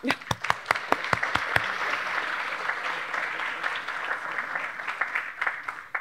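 Audience applauding. A few sharp separate claps start it, building into steady applause that dies away near the end.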